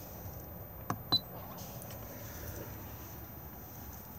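Two short clicks about a second in from a button being pressed on a caravan's wall-mounted control panel, the second with a brief high beep, as the water pump is switched on. A faint steady background runs underneath.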